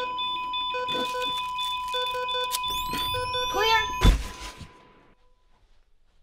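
Hospital patient monitor sounding a steady flatline tone over repeating alarm beeps, with voices, signalling cardiac arrest. A rising whine builds, like a defibrillator charging, and ends in one heavy thump about four seconds in. After the thump everything cuts off and fades to quiet.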